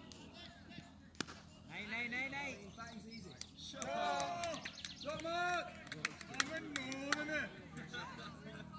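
Cricket bat striking the ball with a single sharp crack about a second in. Then cricketers shout across the field in several drawn-out, overlapping calls, loudest in the middle, with a few smaller knocks among them.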